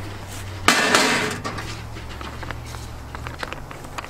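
Salt poured from a pouch into a plastic bucket onto a turkey: a sudden rush of falling grains about a second in that fades over about a second, followed by a few faint ticks.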